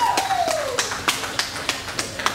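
Scattered clapping from a small crowd as a song ends. A last tone glides down in pitch over the first half-second.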